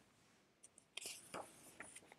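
Near silence, with a few faint soft paper sounds from about a second in as a picture-book page is turned.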